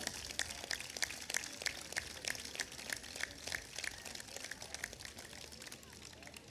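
Faint, scattered applause from an audience: many separate hand claps crackling irregularly for several seconds, thinning slightly toward the end.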